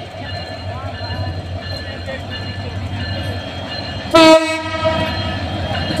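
Bangladesh Railway diesel locomotive approaching with its engine running, the rumble growing slowly louder. About four seconds in its horn sounds: a short loud blast, then held more quietly.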